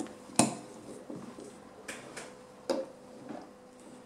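Light plastic clicks and knocks from a folded plastic toy playhouse being handled and opened: one sharper knock about half a second in, then a few softer clicks.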